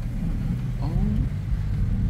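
Steady low rumble of a car's engine and tyres heard from inside the cabin as the car moves slowly.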